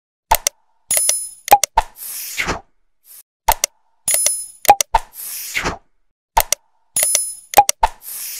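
Sound effects for a Subscribe-button animation, repeated three times about every three seconds: a couple of sharp clicks, a short bell ring, two more clicks and a whoosh.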